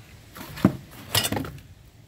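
Loose metal trim pieces and emblems clinking against each other as they are handled: one sharp clink about two-thirds of a second in, then a quick cluster of clinks just after a second.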